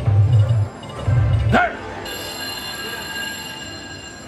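88 Fortunes slot machine game sounds: two heavy low drum-like beats in the first second and a half, a quick rising sweep, then a chord of steady high chime tones held through the rest.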